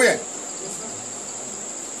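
A steady high-pitched insect trill over faint background hiss, after a single short spoken word at the very start.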